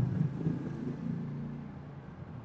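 Low, steady room rumble picked up by a lectern microphone during a pause in speech, fading slowly.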